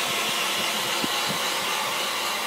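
An 800-watt electric heat gun running, blowing a steady rush of air.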